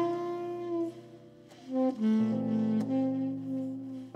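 Saxophone playing a slow jazz ballad melody in long held notes over piano chords.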